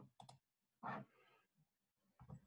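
Two quick clicks of a computer mouse button, close together, followed just before a second in by a short breath; otherwise near silence.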